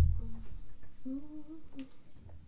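A woman briefly humming a few wavering notes about a second in, after a low thump at the very start, with light handling knocks and rustles around it.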